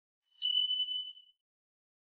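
A single high notification-bell 'ding' sound effect, starting about half a second in and ringing for under a second as it fades out.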